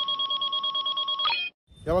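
An edited-in electronic sound effect: a chord of steady beeping tones that pulse rapidly, about ten times a second. It cuts off abruptly about one and a half seconds in, and a man's voice begins near the end.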